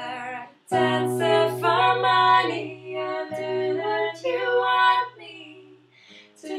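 Female voice singing long, sliding notes over a sustained low note, with a brief break about half a second in.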